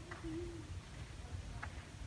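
A faint, low bird call: a single wavering hoot lasting about a second at the start, over a steady low rumble with a few faint clicks.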